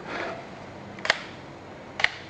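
Two short, sharp clicks about a second apart over a low hiss, from a 5-way 2-position Namur double solenoid valve rig on a pneumatic actuator as its coil power is switched.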